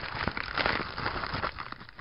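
Plastic poly mailer crinkling and rustling as it is handled and emptied, with many small crackles that fade a little near the end.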